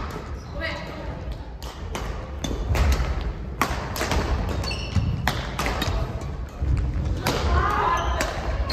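Badminton rally in a sports hall: rackets striking the shuttlecock and players' feet thudding on the court, heard as repeated sharp hits at irregular intervals.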